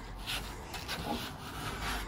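Paintbrush bristles dragged across painted wooden panels in a run of quick back-and-forth strokes, several a second, brushing on white paint.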